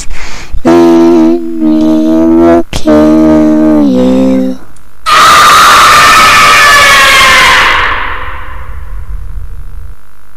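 Horror sound effects: a drawn-out moaning tone held on a steady pitch with two brief breaks, then, about five seconds in, a loud harsh screech that slowly falls in pitch and fades away.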